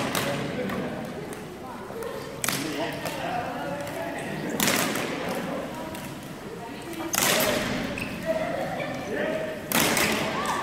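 Floorball shots at goalkeepers: a series of sharp cracks from sticks striking plastic floorballs, about one every two and a half seconds, echoing in a large sports hall.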